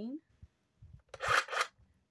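Handling noise: a few faint low bumps, then one short rustle a little over a second in.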